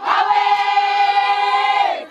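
Group of Zulu women singing together, holding one long note for about two seconds that drops in pitch and breaks off at the end.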